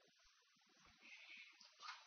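Near silence: room tone, with a faint short sound near the end.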